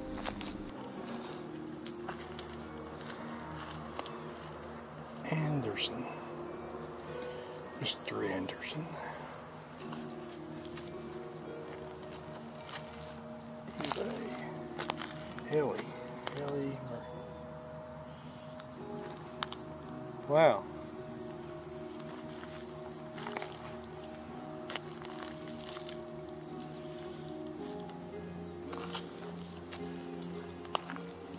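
Insects chirring in a steady high-pitched outdoor chorus, with a few short sweeping sounds over it, the loudest about twenty seconds in, and soft held low tones underneath.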